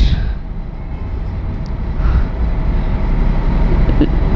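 A steady low rumble with no clear pitch, fairly even in loudness throughout.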